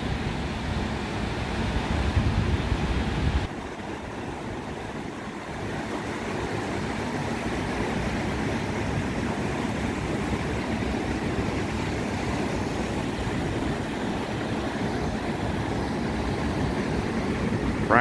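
Ocean surf breaking and washing on a beach, a steady rush. Wind buffets the microphone at first, and this low rumble drops away suddenly about three and a half seconds in.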